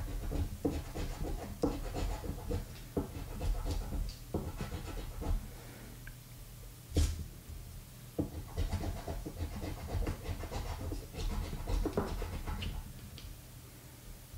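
A metal coin scraping the latex coating off a lottery scratch-off ticket in short repeated strokes, about one to two a second. The strokes pause briefly around six seconds in, then pick up again with a sharper stroke.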